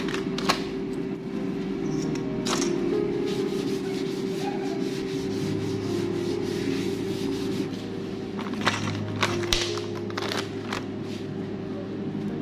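Background music with long held notes, over a cloth rubbing across a wooden board as it is wiped clean, with a few light knocks near the start and about nine seconds in.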